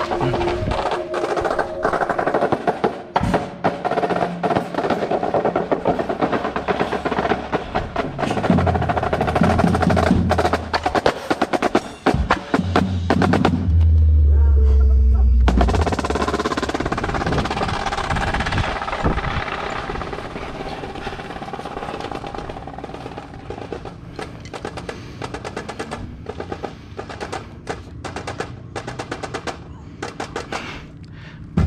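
Indoor percussion ensemble playing its show: dense drum strokes and rolls over deep sustained bass notes. About fourteen seconds in, the drums drop out for a moment, leaving only a loud deep bass. Near the end the drumming is softer, in fast runs of strokes.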